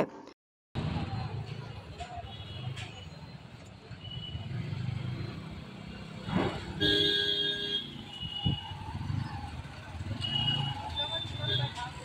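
Busy street traffic: motorcycles and scooters running past with a steady engine rumble, broken by several short horn toots, the loudest about seven seconds in, and people's voices around.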